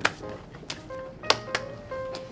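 Hand claps and slaps between two people doing a clapping handshake routine: about four or five sharp smacks, the loudest at the very start and another strong one just past the middle.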